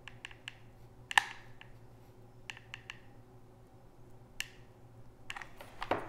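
Light, scattered clicks and taps from working a hot glue gun and handling small foam pieces on a wooden board. The sharpest click comes about a second in, a quick cluster follows around two and a half seconds, and a few more come near the end.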